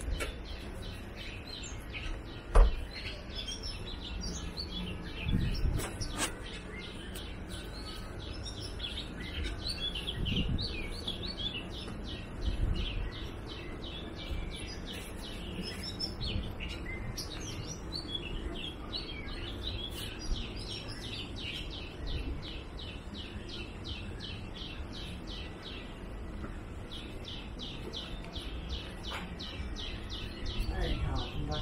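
Small birds chirping continuously in dense subtropical woodland, with occasional low thumps and one sharp knock about two and a half seconds in.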